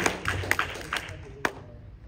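Scattered hand claps from a small congregation, the last of the applause after a song, thinning out to a few single claps over about a second and a half.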